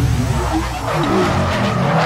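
Sound effect of car tyres squealing and skidding over a low rumble.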